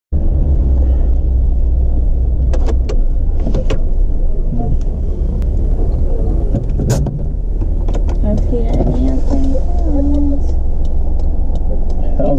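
Car engine running, a steady low rumble heard from inside the cabin, with a few sharp clicks and knocks, the strongest about seven seconds in.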